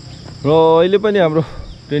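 Steady, high-pitched drone of insects in the roadside vegetation. A voice calls out loudly once in a long drawn sound about half a second in, and a second call begins near the end.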